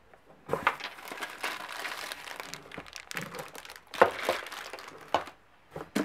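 Plastic packaging crinkling and rustling as hands rummage through bagged stones in a cardboard box, with a couple of sharp knocks about four and five seconds in.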